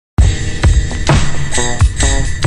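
Instrumental hip-hop beat kicking in suddenly a moment in: hard, bass-heavy drum hits over a sampled loop with a pitched melodic phrase near the end.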